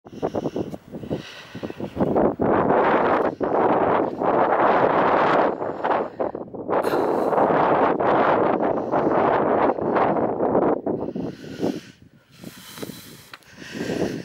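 Wind buffeting the camera's microphone in strong, uneven gusts, easing off near the end.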